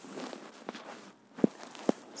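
A soft hiss, then three short sharp knocks, the last two the loudest and about half a second apart.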